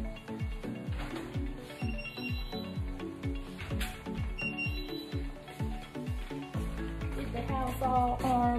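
Background music with a deep, sliding bass kick about twice a second under held tones, and a voice coming in near the end.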